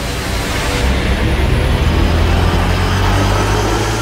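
Dramatic background score: a sustained low rumbling drone with a hiss over it, swelling slightly and then holding steady.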